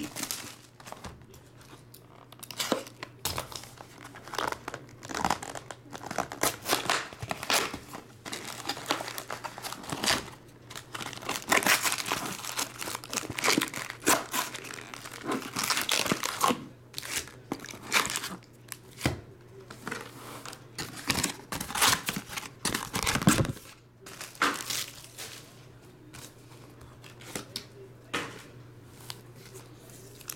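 Clear plastic shrink-wrap being torn off a trading-card box and crinkled, then foil card packs rustling as they are handled. Irregular crackling and crinkling throughout, over a faint steady low hum.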